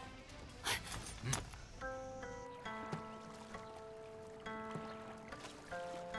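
Two sharp swishing hits in the first second and a half. Then, from about two seconds in, a slow melody of plucked zither notes, each one ringing on.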